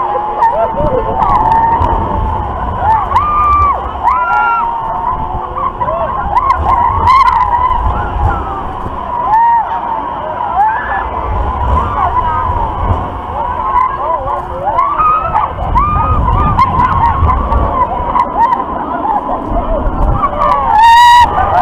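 Many riders screaming and whooping in short, high cries over and over, over a low rumble of wind buffeting the microphone that swells and fades every few seconds as the ride swings.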